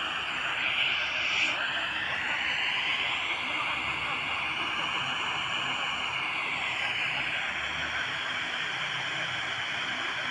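Tecsun PL-310ET portable radio's speaker playing a weak, distant FM station on 91.5 MHz: steady static hiss with faint broadcast speech buried under the noise. This is a signal at the edge of reception, carried about 300 km by tropospheric ducting.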